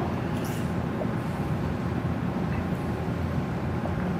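Steady low room noise, an even rumble with no distinct events.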